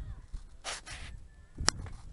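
Wind buffeting the microphone while stepping over loose beach stones and boulders, with a short scraping rush past the middle and one sharp click of stone on stone near the end.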